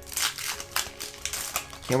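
Foil Yu-Gi-Oh booster pack wrapper crinkling and tearing as it is ripped open, a run of irregular crackles.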